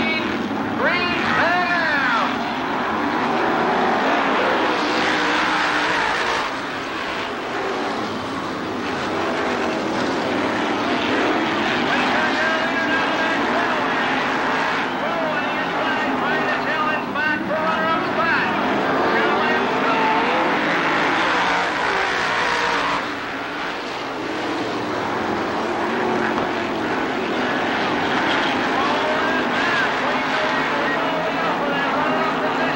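A pack of winged dirt-track sprint cars' V8 engines racing at full throttle, taking the green flag. The engine notes climb in the first couple of seconds, then keep rising and falling as the cars come past and go away.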